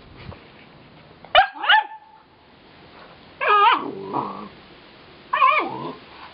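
Dog barking: a quick double yip about a second and a half in, then two longer barks that fall in pitch.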